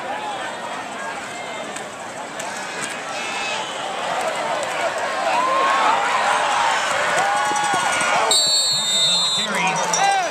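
Football crowd yelling and cheering from the stands, growing louder in the middle as the ball carrier breaks toward the sideline. Just after the tackle near the end, a referee's whistle blows for about a second, blowing the play dead.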